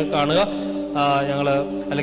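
A man's voice speaking in a steady, chant-like delivery, pausing briefly about half a second in, over a steady held musical chord.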